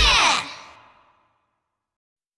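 The last sung note of a children's song and its backing music, gliding down and ending about half a second in, then fading to dead silence within about a second.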